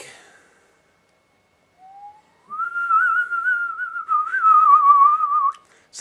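Whistling: after a short faint note, a single pitch slides up to a held note that wavers slightly for about three seconds, then stops abruptly.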